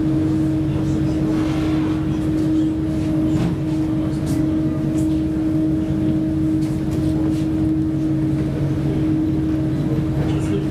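A ferry's engines and on-board machinery droning, a constant hum with a steady held tone over it, at an even level throughout.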